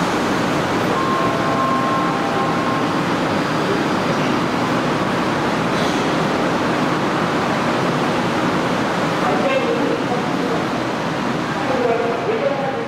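Seoul subway train standing at an underground platform, with a steady loud hum of its running equipment and the station. A few brief tones sound about one to three seconds in, and in the second half the train doors and platform screen doors slide shut.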